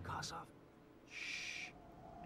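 A brief hissing screech about a second in, lasting about half a second, after a faint snatch of voice.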